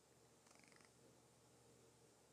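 Near silence: faint room tone in a pause between spoken sentences.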